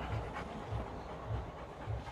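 A Rottweiler panting steadily with her mouth open, tired out after a long walk.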